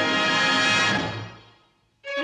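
The sitcom's closing theme music, ending on a held chord that fades away over the second half into near silence.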